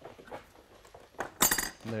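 Steel adjustable wrench working a hex nut onto the end of a threaded rod: small metal clicks, then one loud, ringing metal clink about one and a half seconds in. The nut is being forced to start on the freshly chamfered end threads.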